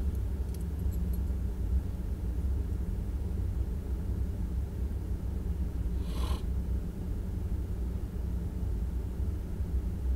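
A vehicle engine idling, a steady low rumble heard from inside the stopped vehicle's cab. About six seconds in comes one brief, higher sound.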